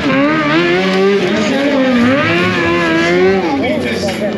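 Stunt motorcycle engine held at high revs under the throttle, its pitch swinging up and down in smooth waves and dropping sharply near the end.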